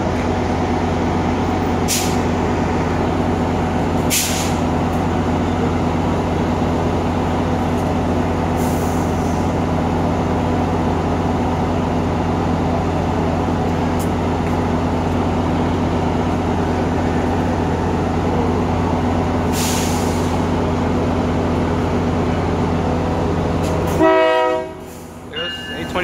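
A Brookville BL36PH diesel passenger locomotive idling at the platform: a steady, loud engine rumble and hum, broken by a few short hisses of air. Near the end the rumble stops abruptly and short pitched tones sound.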